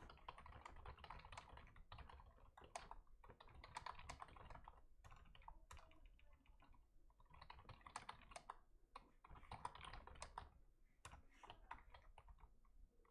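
Faint typing on a computer keyboard: several quick runs of keystrokes separated by short pauses, thinning to scattered taps near the end.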